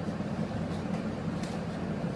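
Steady low hum and airy whir of workshop background noise, with a couple of faint soft clicks.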